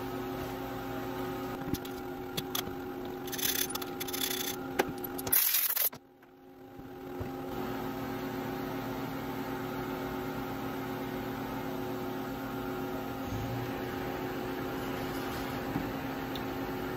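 Steel milling-machine vise being unbolted and lifted off a machining center's table: several short metal clanks and rattles over a steady machine hum. The sound drops out suddenly about six seconds in, then the steady hum returns alone.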